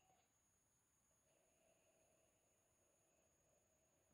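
Near silence: room tone.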